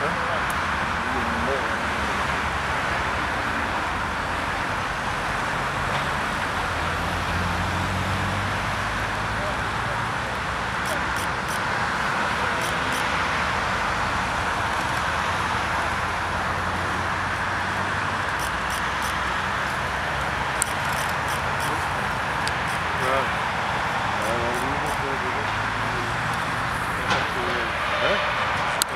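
Steady outdoor background noise of distant road traffic with faint voices of people nearby, and scattered sharp clicks in the second half. The owl itself makes no call.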